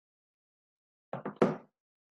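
Three quick knocks in a row, the last the loudest, dying away within a fraction of a second.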